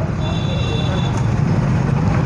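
Steady low rumble of road traffic, with a faint high tone for under a second near the start.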